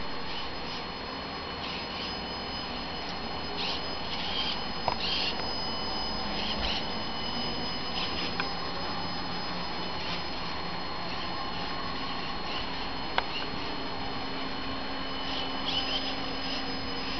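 Small electric drive of a line-following model car running on carpet: a faint steady high whine over hiss, with short high chirps every second or two and a couple of sharp clicks.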